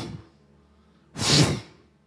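A man's single sharp, breathy burst of air into a handheld microphone, about half a second long, a little past a second in.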